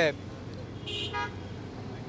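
A vehicle horn gives a short toot about a second in, over a low, steady background hum of outdoor traffic.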